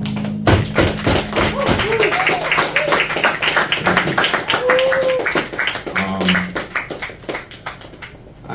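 A final acoustic guitar chord rings out, then a small audience claps and a few voices call out; the applause thins out near the end.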